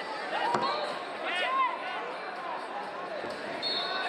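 Wrestling shoes squeaking on the mat during a scramble, as short high squeals, with shouting from coaches and spectators echoing in a large hall. One sharp slap comes about half a second in.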